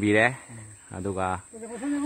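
Speech only: a person speaking two short phrases, with no other clear sound.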